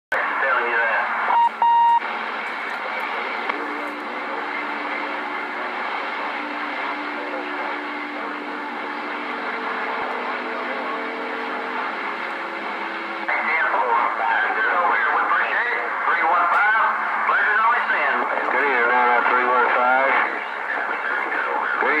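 Radio receiver hiss and static with several steady low whistles from carriers, and a short steady beep about two seconds in. From about halfway a distorted voice of a distant station comes through the noise, louder than the static before it.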